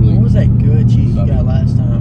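Steady low engine and road rumble inside a car's cabin as it drives, with men's voices talking over it.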